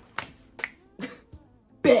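A person snapping their fingers several times, about one sharp snap every half second, with the last snap the loudest.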